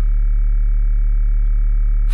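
Music: a loud, steady low drone with a buzzy, even stack of overtones, held unchanged with no attacks or breaks.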